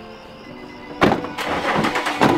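Background music with sustained tones; about a second in, a car door shuts with a heavy thud, followed by a further knock shortly after.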